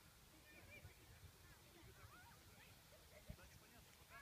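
Near silence, with faint, distant children's voices coming across the field.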